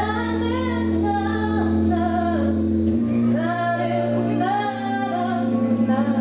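A woman singing a pop ballad into a handheld microphone over instrumental accompaniment with held bass notes. The bass note steps up about three seconds in.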